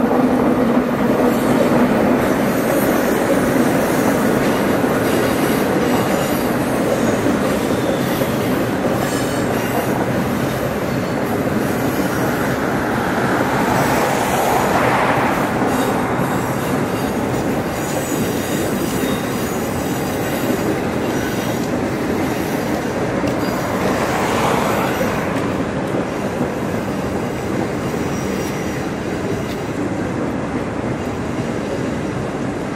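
An electric locomotive-hauled passenger train rolls across a bridge. The locomotive's steady hum fades in the first few seconds. The carriages then pass with a continuous rumble and wheel clatter, with two swells of higher-pitched wheel noise, one about midway and one later.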